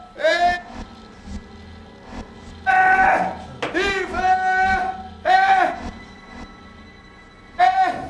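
A man shouting for help in distress: five loud, strained cries in a row, over quiet sustained music.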